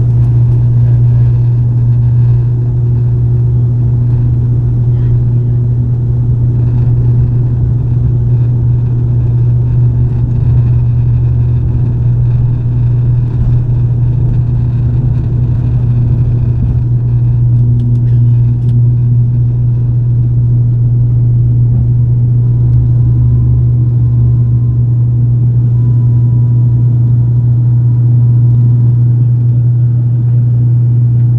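Turboprop engines and propellers at takeoff power, heard from inside the passenger cabin: a loud, steady low drone through the takeoff roll and the climb after lift-off.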